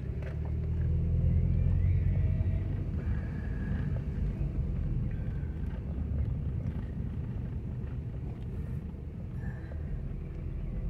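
Car driving slowly, heard from inside the cabin: a steady low engine and road rumble, loudest in the first few seconds.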